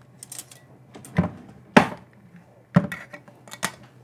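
A spoon and a knife knocking and clinking against an opened tin can and the countertop: about five sharp knocks, the loudest a little before the middle, with lighter ticks near the start.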